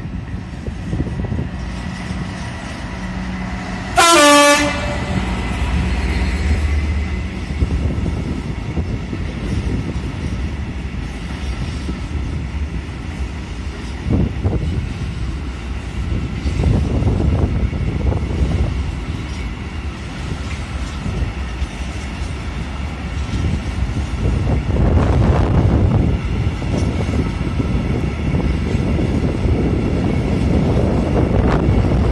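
Class 66 diesel locomotive gives one short horn blast about four seconds in, its engine running as it passes, then a long train of hopper wagons rolls by with a steady rumble of wheels and occasional knocks.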